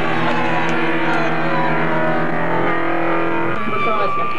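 Distorted electric guitars from a live punk band holding one sustained, droning chord, which breaks up shortly before the end as the playing changes.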